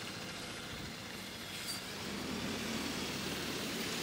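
City bus engine running close by, over steady street traffic noise.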